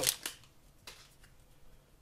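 Shiny plastic wrapper of a hockey card pack crinkling briefly as it is let go, then quiet handling of the trading cards with a couple of faint ticks.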